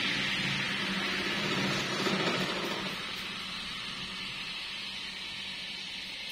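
Several electric stand fans with modified plastic propellers spinning down: the rush of air and a low motor hum fade over the first three seconds, then a quieter steady hiss remains as the blades coast almost to a stop.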